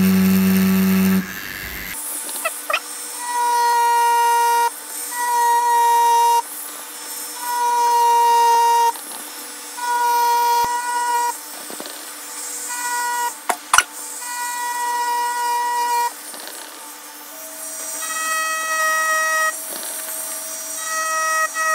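Background music: a melody of long held notes, each about a second long with short gaps, stepping up in pitch near the end, over a faint steady hum. A sharp click sounds about two-thirds of the way through.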